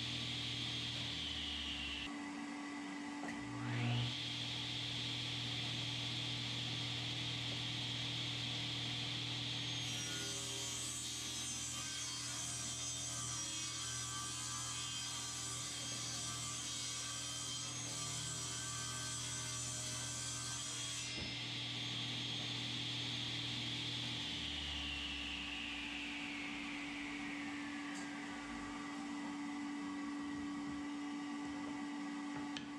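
Table saw starting up about four seconds in, then ripping an oak board, a loud rasping cut from about ten to twenty-one seconds. After the cut the motor whines on, then the blade spins down with a falling whine near the end.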